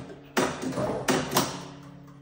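Gent marine impulse clock's advance mechanism pulsing the dial forward after 'advance' is pressed: two sharp mechanical clunks about a second apart, each ringing briefly.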